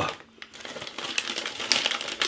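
Close-up crunching of Takis Fuego rolled tortilla chips being chewed, a dense run of sharp crackles that builds up about half a second in.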